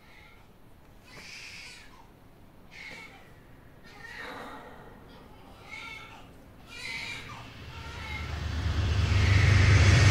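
Faint short sounds about every second and a half, then a low droning rumble with a rising hiss that swells steadily louder over the last few seconds: a horror soundtrack riser building up.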